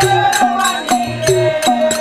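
Bhil Gavri folk music: voices chanting a held, wavering melody over a steady drum beat with sharp percussion strikes, about two to three a second.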